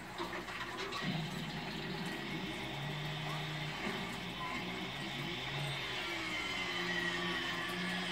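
Soundtrack of a film playing on a television across the room, in a stretch without dialogue: a steady rushing hiss with held low tones and a falling whistle-like glide late on.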